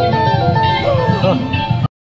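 Electric guitar played in a quick run of single notes with a few string bends. It cuts off abruptly just before the end.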